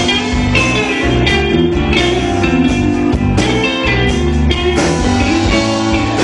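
Live rock and roll band playing, with guitar to the fore over a steady drum beat.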